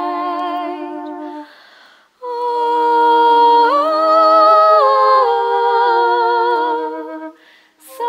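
Several voices humming a hymn in close harmony, unaccompanied. One held chord ends with a short breath, and then a second chord is held for about five seconds. In the middle of it, one voice steps up and then back down.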